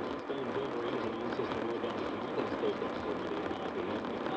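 Steady road and tyre noise inside a car cruising at highway speed, with a faint, muffled talk-radio voice underneath.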